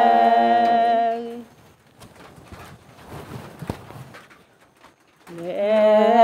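Unaccompanied voice singing a Karen traditional 'sor' song, holding one long steady note that fades out about a second and a half in. After a pause of nearly four seconds with only faint background noise, the next long held note begins near the end.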